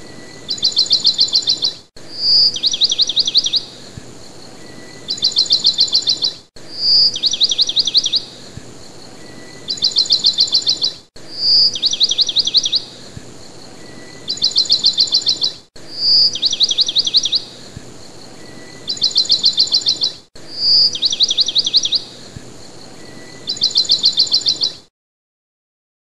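Bird song of rapid high trills and a single clear note, repeated the same way about every four and a half seconds as a loop. It stops shortly before the end.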